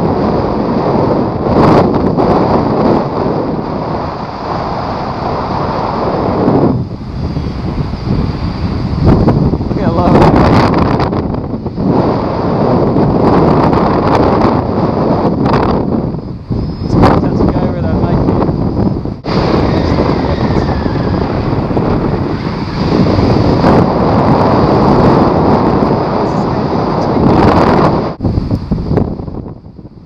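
Strong wind rushing over the microphone of a paraglider flying fast downwind in rough air, buffeting and surging up and down with a few short dips.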